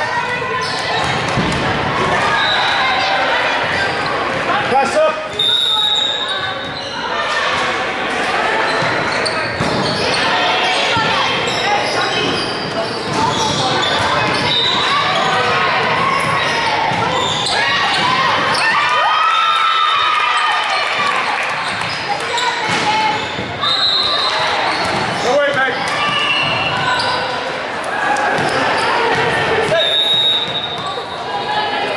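Indoor volleyball play in a gym: the ball being struck and hitting the floor, players calling to each other and spectators talking, all echoing in the large hall. Short high squeaks or whistle tones come several times.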